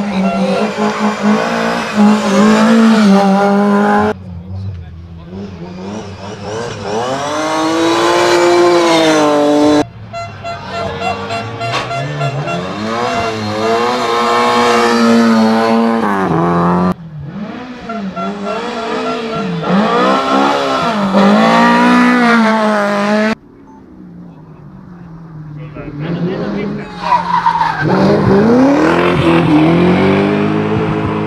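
Rally car engines worked hard at high revs, their pitch climbing and dropping through gear changes as the cars pass. The sound comes in a run of short passes with abrupt cuts every four to seven seconds. One of the cars is a Lada saloon.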